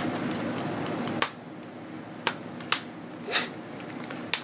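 Hands handling a plastic CD jewel case: a steady rustle for about the first second that cuts off with a sharp click, then a few separate light clicks and a brief swish.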